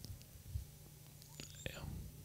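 Quiet hall with a steady low hum and a few faint clicks, and a faint whispered voice near the end.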